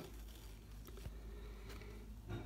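Quiet room tone: a faint steady low hum with a few soft clicks, one about a second in and one later on.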